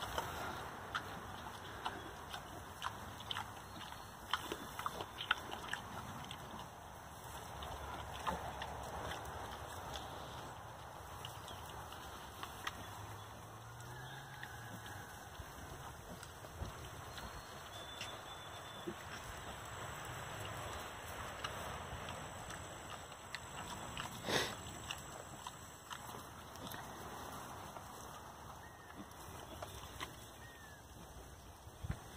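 Pigs, a sow and her piglets, rooting in straw and dirt: faint low grunts and snuffling with scattered small rustles and clicks, and one sharper click about two-thirds of the way through.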